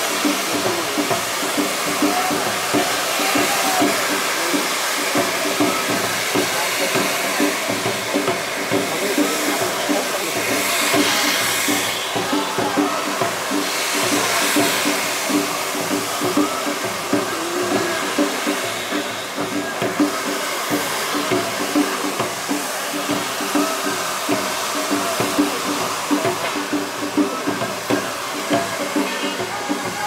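Several tezutsu hanabi, hand-held bamboo-tube fireworks, spraying fountains of sparks with a steady loud rushing hiss, easing somewhat in the last few seconds.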